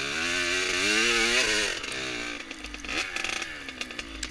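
2000 Kawasaki KX80 two-stroke dirt bike engine revving high under throttle, its pitch wavering up and down. About halfway through the revs drop and it runs lower and uneven, with an irregular crackle.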